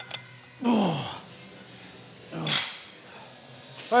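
A man lifting a dumbbell lets out strained grunts of effort, twice, each falling sharply in pitch, in time with his reps. A short metallic clink comes right at the start.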